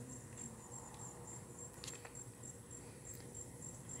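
Faint, high-pitched insect chirping in an even, steady pulse, with one brief soft click about two seconds in.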